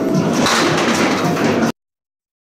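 Candlepin bowling ball rolling down the wooden lane and striking the thin candlepins, which clatter as they fall. The sound cuts off abruptly near the end.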